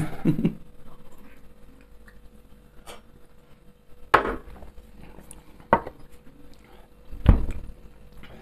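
Glass shot glasses set down on a table: a few short knocks spread through a quiet stretch, with a heavier thump near the end.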